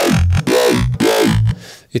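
Ableton Operator FM synth growl bass, a dubstep-style patch played on its own without effects. Its LFO-driven filter makes each note's tone sweep up and back down in a rapid wobble over a few short phrases, stopping about one and a half seconds in.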